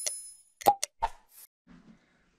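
Sound effects of an animated subscribe button: a high bell ding that rings out and fades over about half a second, then three quick pops or clicks in a row a little past the middle.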